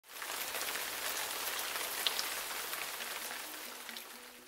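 A steady rain-like patter and hiss that fades away toward the end, with a few faint steady tones coming in about three seconds in.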